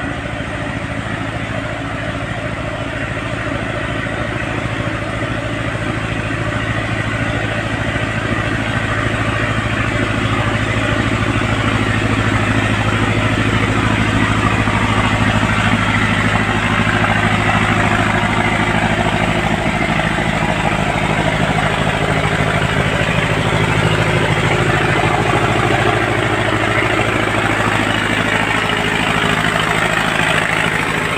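Engine of road-construction machinery running steadily, growing gradually louder over the first half. Its pitch drops a little about two-thirds of the way through.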